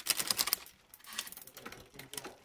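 Mountain-bike drivetrain clicking as the crank is turned by hand and the Shimano front derailleur shifts the chain across the three-ring crankset. There is a dense run of chain clatter in the first half second, then scattered clicks.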